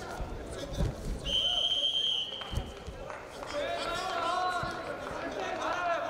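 A referee's whistle blown once, a steady shrill tone lasting about a second, starting a little over a second in, with dull thumps of bodies on the mat around it.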